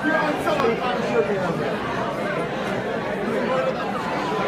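Many people chatting at once, overlapping conversations filling the room.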